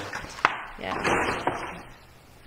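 A person speaking briefly ("yeah"), with a sharp tap about half a second in.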